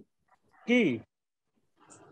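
A man's voice pronouncing one short syllable that falls in pitch, between pauses; a faint hiss with a thin steady tone comes in near the end.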